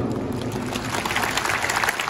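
Crowd of spectators applauding in a football stadium: many hands clapping at once, steady through the whole stretch.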